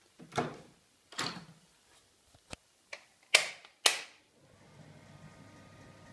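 An interior door and a switch being worked by hand: a few dull knocks, then two sharp clicks about half a second apart, after which a low steady hum starts up.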